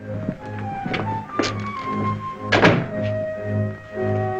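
Film score music with a low note pulsing about twice a second, over footsteps and knocks, and a door shutting with a thud about two and a half seconds in.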